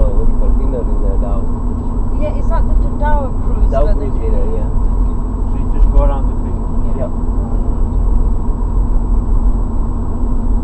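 Steady low rumble of a vehicle on the move, heard from inside it, with faint voices talking on and off in the background during the first several seconds.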